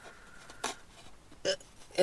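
Cardboard burger box handled as the burger is taken out of it, with two brief soft sounds about half a second and a second and a half in, over quiet room tone inside a car.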